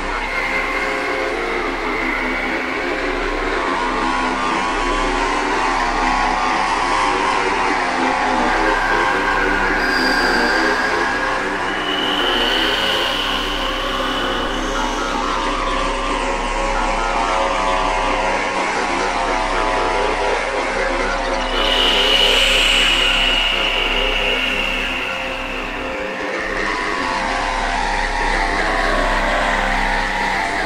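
Ambient electronic music: a steady low drone under a slowly shifting mid-range texture, with high held tones that swell in and fade out every few seconds, the loudest about two-thirds of the way through. No clear beat.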